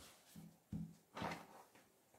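Three faint, brief rustles and brushes of cotton fabric being smoothed flat and handled on a cutting mat, in the first second and a half.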